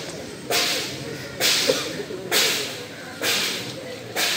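A regular swishing: a sharp hiss about once a second, each one fading over half a second, four or five in a row.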